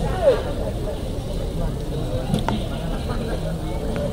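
Indistinct voices of a gathered group over a steady low rumble, with a single sharp click about halfway through.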